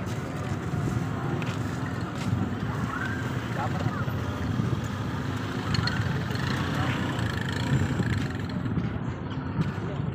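Indistinct chatter of a gathered crowd over steady outdoor background noise, with no single clear event.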